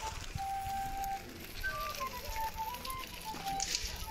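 A simple melody on a high, flute-like wind instrument, one note at a time stepping up and down, over low rumbling noise.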